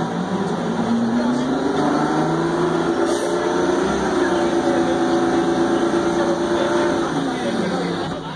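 Crown Supercoach Series II school bus's diesel engine heard from inside the bus, its pitch climbing steadily over the first few seconds as the bus accelerates, holding level, then falling near the end as it eases off.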